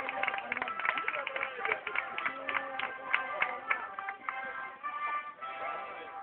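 A band playing processional music, with many held notes and quick notes throughout, over voices of the crowd.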